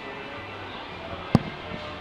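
Steady background noise with one sharp knock a little over a second in.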